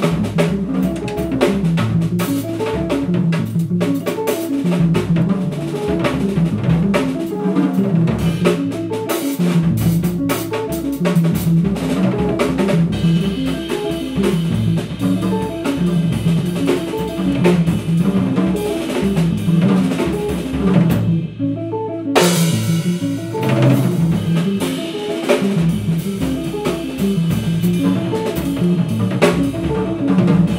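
Live jazz band playing an instrumental passage, the drum kit busiest, with rapid snare hits and rimshots over upright bass notes.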